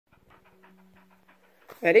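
Wheaten Terrier panting quickly and evenly with its mouth open, soft and fairly quiet. A person's voice cuts in near the end.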